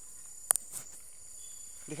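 A steady high-pitched insect chorus, with a single sharp click about half a second in.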